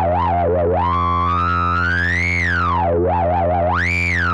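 u-he Diva software synth holding one low note through its MS-20-modelled resonant filter while the cutoff is swept by hand. The whistling resonance peak dives at the start, wobbles, glides slowly up, drops about three seconds in, wobbles again and climbs near the end.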